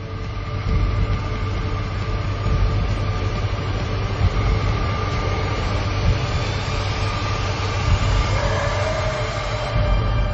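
Loud, continuous rumbling from a film trailer's action sound mix, with a faint steady tone held underneath and a second tone coming in near the end.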